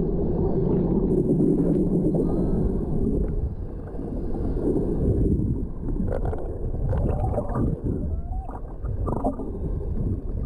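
Underwater noise picked up by a submerged GoPro: a dense low rumble of moving water for the first few seconds, then a looser stretch with scattered clicks and a few short pitch glides.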